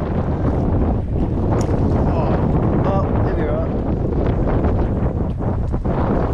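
Wind buffeting the camera's microphone: a steady low rumble.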